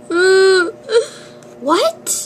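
A girl's voice acting out sobbing for toy characters: one held crying note of about half a second, a short sob about a second in, and a cry that rises in pitch near the end.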